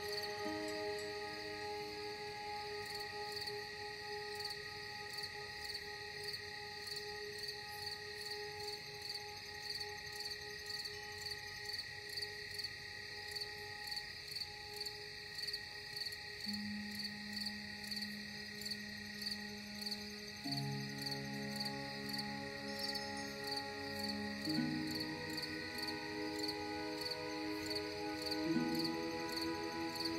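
Crickets chirping in a steady pulsing rhythm over slow ambient music of soft held tones; deeper sustained chords come in about halfway and change every four seconds.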